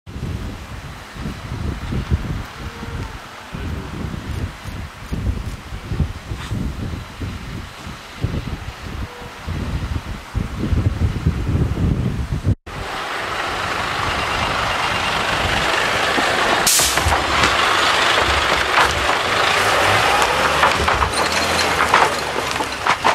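Fire engines running, heard first as an irregular low rumble. After a cut it becomes a steady loud hiss over a low engine hum, with a few sharp knocks near the end.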